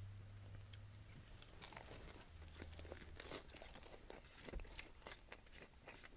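Very faint chewing of a soft garlic cheddar knot: scattered small mouth clicks and crackles over a low hum.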